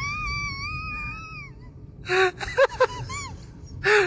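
A person's high, wavering wail of laughter held for about a second and a half, then a few short gasping bursts of laughter about two seconds in and again near the end.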